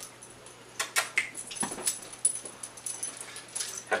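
A pet dog whimpering briefly, with scattered clicks and rustles as it scrambles up onto a couch.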